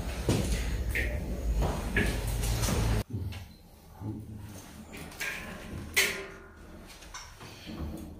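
Rustling and light knocks from handling salted pork pieces and hanging them on a metal rail rack. A low rumble runs under the first three seconds and stops abruptly; after that, the noises come in short, scattered bursts, the sharpest near six seconds.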